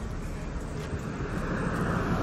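A vehicle passing on the road, a steady rushing noise that builds gradually as it approaches.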